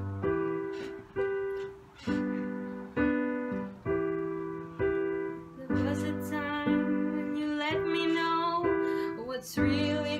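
Keyboard playing slow piano chords, about one a second, each left to ring and fade. From about halfway through, a voice joins in softly along with the chords.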